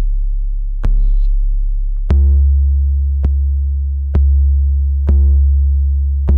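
Distorted 808 bass from the MPC One's Drum Synth plugin playing a line of long, low sustained notes that change pitch about once a second, each starting with a sharp click. It plays through the plugin's distortion, whose high-cut filter is being turned down to take away some of the higher content.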